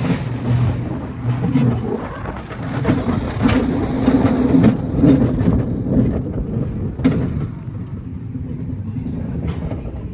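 Roller coaster car running along its steel track, a rumbling rattle with a few sharp clacks; it eases somewhat after about seven seconds.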